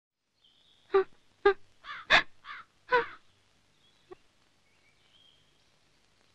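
A crow cawing: about five short calls in quick succession, then one short faint call about a second later.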